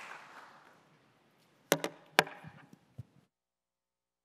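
Applause dying away, then three sharp knocks close together about two seconds in and a lighter one a second later, before the sound cuts out to dead silence.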